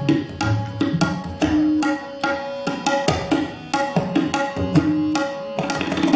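Tabla played solo in fast rhythmic phrases: dense, crisp strokes on the treble dayan mixed with deep, ringing bass strokes on the bayan.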